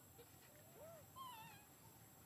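Faint high calls from a baby macaque: a short arched call just before a second in, then a longer wavering one right after.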